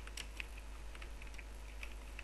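Typing on a computer keyboard: irregular keystroke clicks, several a second, over a steady low hum.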